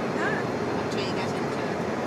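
Steady road and engine noise inside a moving car's cabin, with a brief faint vocal sound near the start.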